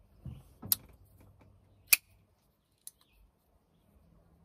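Custom Trevor Burger LEXK liner-lock folding knife being worked open and closed by hand: three sharp metallic clicks spread over about two seconds, the loudest near the middle, as the blade snaps into place.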